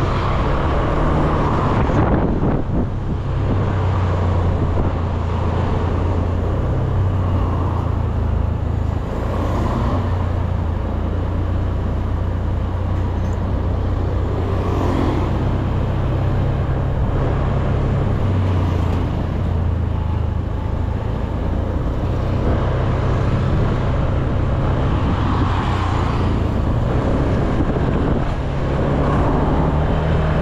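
Honda scooter's engine running steadily under way, with road and wind noise and the traffic around it.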